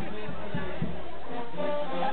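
A brass band playing, with held notes rising over the noise of a chattering crowd.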